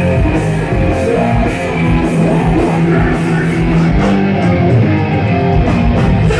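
Hardcore punk band playing live: distorted electric guitars, bass and drums, loud and steady, with a regular beat.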